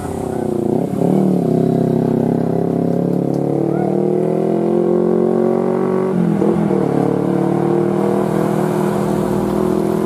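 Hino tractor unit's diesel engine labouring as it hauls a heavy load up a climb, its pitch slowly sagging under the load, with brief breaks in the note about a second in and again around six seconds in.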